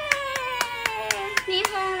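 Rapid hand clapping, about four claps a second and about eight in all, over a long, high-pitched held voice that slowly falls in pitch.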